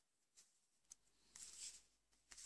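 Near silence, with a faint tick about a second in and a brief soft rustle just after, from hands handling a metal circular knitting needle and wool yarn.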